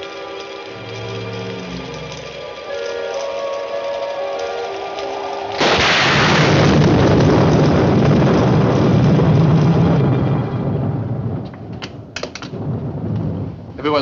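Film score of held notes over a low pulse; about five and a half seconds in, a sudden loud thunderclap breaks in and rumbles on for about five seconds before dying away.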